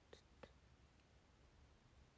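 Near silence: faint room tone with two small clicks in the first half second.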